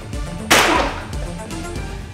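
Synth background music with one sudden, sharp, loud crack about half a second in that dies away quickly: a fight-scene impact sound effect.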